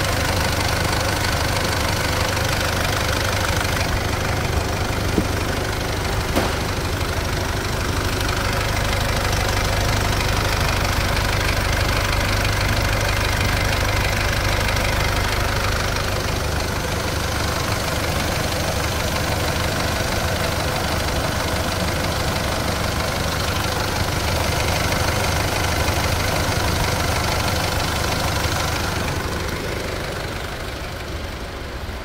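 SsangYong Korando's common-rail diesel engine idling steadily, heard close up with the hood open, with two brief ticks a few seconds in.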